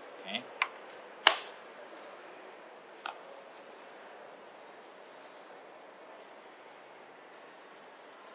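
Sharp clicks of a tablet's magnetic kickstand cover and keyboard case being fitted and handled: a small click, then a loud snap about a second in, and a weaker click a couple of seconds later, over faint room hiss.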